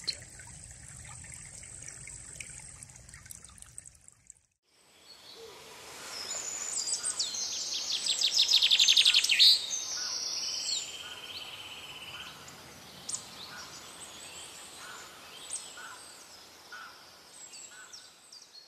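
A small forest brook splashing steadily for about four seconds, cutting off suddenly. After a short silence, songbirds sing and call over a steady background hiss; a loud, rapid trill about halfway through is the loudest sound.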